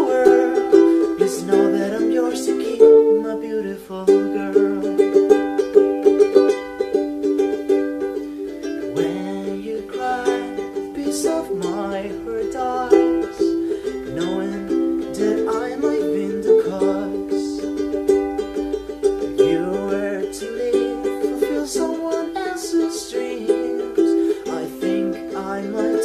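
Solo ukulele strummed in chords, with a steady repeating strum and no singing.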